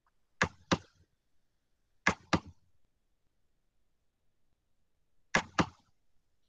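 Computer mouse double-clicking close to the microphone: three pairs of sharp clicks, with quiet between them.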